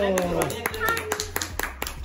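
Children clapping their hands in quick, irregular claps, with a child's voice falling in pitch at the start.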